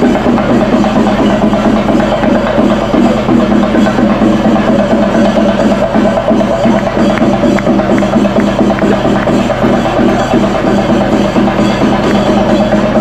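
Loud, continuous festival procession music driven by fast drumming with sharp stick strokes, playing without a break.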